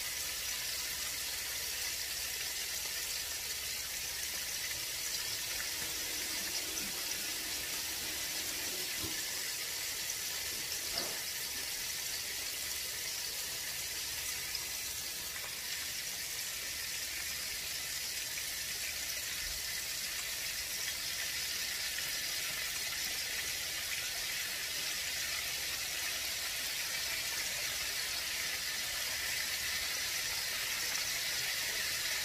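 Breaded chicken legs deep-frying in oil in a cast-iron skillet: a steady sizzle of bubbling oil.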